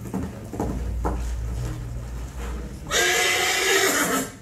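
Recorded horse sounds played back over a large horn loudspeaker system: a few hoof knocks over a low rumble, then a loud horse whinny about three seconds in, lasting about a second.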